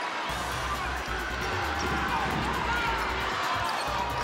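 A basketball being dribbled on a hardwood court, with arena background sound.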